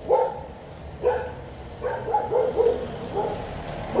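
A dog barking repeatedly, about six short barks.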